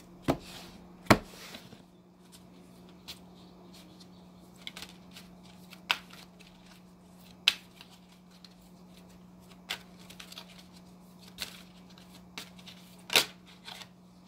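A deck of divination cards being shuffled by hand, with scattered sharp card snaps and taps, the loudest about a second in and near the end, over a faint steady hum.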